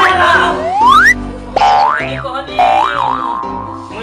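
Comic sound effects over background music: a rising whistle-like pitch sweep that ends about a second in, then a quick swoop up and down, then wavering up-and-down tones.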